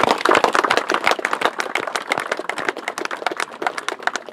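A group clapping: a round of applause, dense at first and thinning out toward the end.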